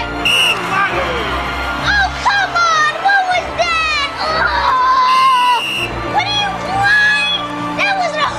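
A referee's whistle blows twice, briefly about half a second in and again for nearly a second around five seconds. Crowd shouting and cheering runs under it, over a film music score.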